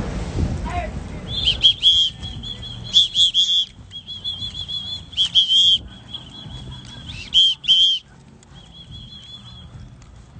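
A songbird singing: phrases of quick, repeated high chirping notes, starting a little over a second in and running in bursts almost to the end.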